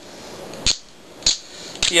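Small plastic clicks from a one-inch PVC coupling being handled and trimmed by hand: two sharp clicks about half a second apart, then a few quick small ones.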